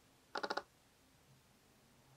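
A brief rattle of about five quick clicks from the Canon 50mm camera lens, a third of a second in, otherwise near silence. The clicking is picked up because the mic was not properly plugged in.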